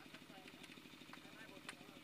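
Near silence: faint distant voices over the low, steady throb of an idling engine, with a few faint clicks.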